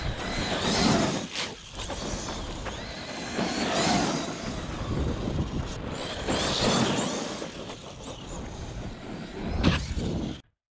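1/8-scale Arrma Kraton EXB RC truck with a 4092-size brushless motor, whining as it accelerates and backs off in several swells, mixed with tyre noise on the rough pavement. A sharp loud hit comes just before the end.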